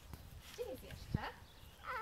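A young child's brief, wordless vocal sounds, with a single sharp knock a little over a second in.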